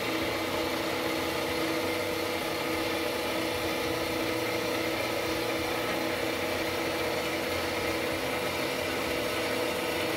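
Ellis 1600 band saw, set up as a vertical saw, running with its blade cutting through a metal plate fed by hand. The sound is steady throughout, several held tones over a hiss.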